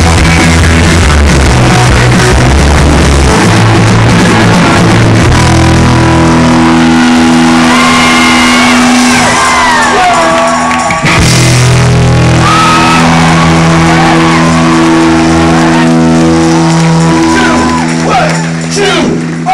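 A live rock band playing loud, with electric guitar and a dense, sustained low end. The recording is pushed to the top of its range and sounds overloaded. Gliding high notes come in midway, and the wall of sound breaks briefly just after the middle.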